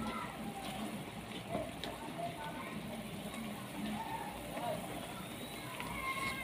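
Pork steak simmering in its sauce in a pot, stirred with a plastic ladle so the liquid sloshes, then left to bubble.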